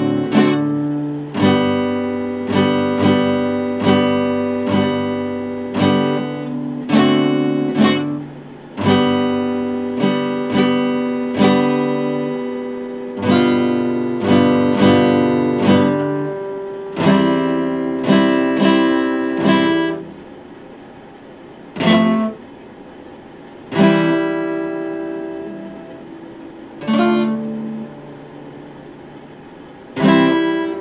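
Epiphone steel-string acoustic guitar strummed in chords, a steady run of strokes for about twenty seconds, then a few single chords left to ring with pauses between them.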